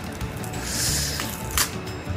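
Plastic wrapping on a snack box being torn open by hand: a short crinkling rip about half a second in, then a sharp snap near the end as the wrapper gives way. Background music plays under it.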